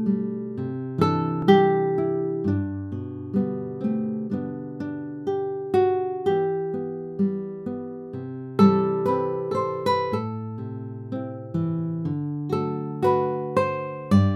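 Solo instrumental introduction to a hymn: single plucked notes picked one after another in a slow broken-chord pattern, each ringing and dying away, with no voice yet.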